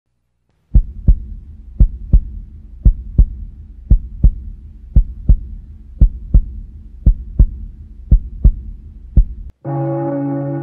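Heartbeat sound effect: loud, deep double thumps, lub-dub, about once a second, that stop suddenly. Just before the end a struck bell-like tone starts ringing.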